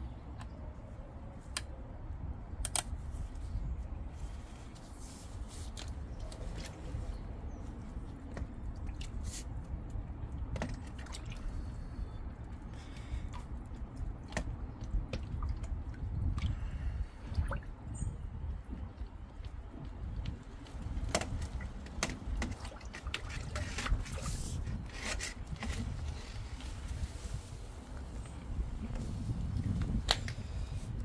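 A drain plunger on rods being pushed and pulled in a manhole chamber full of standing sewage water, sloshing and splashing the water, with scattered clicks and knocks. The drain downstream is blocked, so the chamber has filled up.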